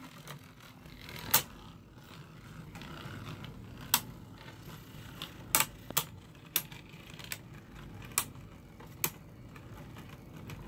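Sharp, irregular clicks and taps of plastic Beyblade tops and parts being handled, about one a second, over a low rumble from the phone being moved about.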